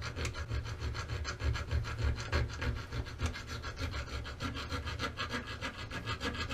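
A round file rasping on the loading-port edge of a Mossberg 930 shotgun's aluminum receiver in a steady series of short, light strokes, rounding the sharp edge into a bevel.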